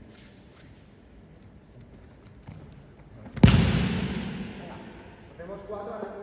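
A judoka thrown with kouchi gari lands on the tatami mats with one loud slap and thud about three and a half seconds in, echoing on for a couple of seconds in the large hall.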